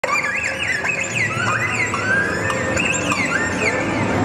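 Đàn nhị, the Vietnamese two-string bowed fiddle, played with quick sliding glides that rise and fall in pitch, one note sweeping into the next.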